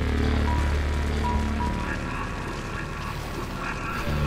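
Animated-series soundtrack: music over a steady low rumble.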